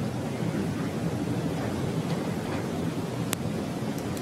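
Steady hiss of background room noise, with a single short click about three seconds in.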